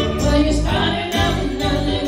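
Live band playing an upbeat song, with electric guitar and drums over a steady beat and a tambourine jingling through it.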